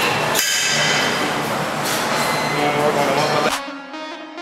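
Loud, dense gym background noise with metal clinks, cut off suddenly near the end and replaced by guitar-led music.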